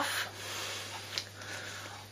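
Faint rubbing and rustling of hands handling a plastic stick deodorant held close to the microphone, with one small click about a second in.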